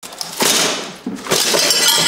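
Broken glass shards tipped from a plastic dustpan into a cardboard box, clattering and clinking in two pours, the first about half a second in and the second just past the middle.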